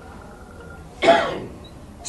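A man clears his throat once, about a second in, a short sharp sound that fades quickly in a pause between speech.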